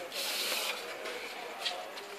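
A brief hiss, about half a second long near the start, then low steady background noise.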